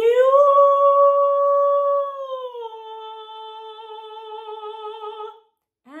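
A woman's trained singing voice finishing an upward slide of about a sixth on the ee-oo-ah vowels, from chest toward head voice. She holds the top note, glides down a few steps a couple of seconds in, and holds the lower note with vibrato until it stops near the end. A new sung note starts right at the close.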